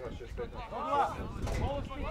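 Voices calling out with unclear words, over a low rumble of wind on the microphone.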